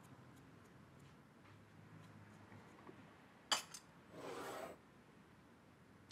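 A drink set down on a table with a single sharp clink about three and a half seconds in, followed by a short soft rustle; otherwise faint room tone with small ticks.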